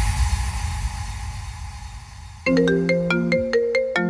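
A break in a hardstyle mix with no beat. A fading wash of reverb and noise is followed, about two and a half seconds in, by a ringtone-like melody of short marimba-like synth notes.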